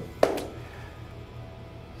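A sharp double smack about a quarter second in, followed by studio room tone with a low steady hum.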